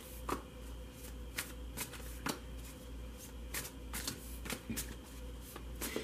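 A deck of tarot cards being shuffled in the hands: an irregular run of short, crisp card snaps and flicks, over a steady low hum.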